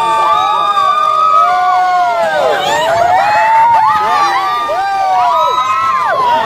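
Riders on a swinging boat fairground ride, children and adults together, screaming and whooping in many overlapping long cries that rise and fall in pitch.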